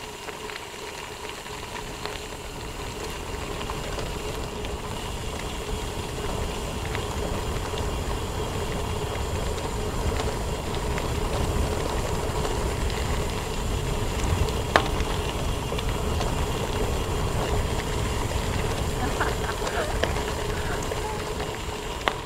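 Gravel bike rolling along a gravel trail: a steady rumble of tyres and wind on a bike-mounted camera, growing louder over the first several seconds, with a single sharp click about fifteen seconds in.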